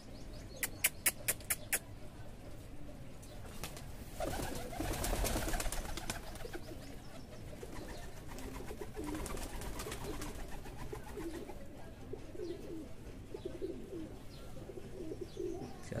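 Domestic pigeons cooing, low wavering calls that run on through the second half. A quick run of about six sharp clicks comes near the start, and a louder rustling burst a few seconds in.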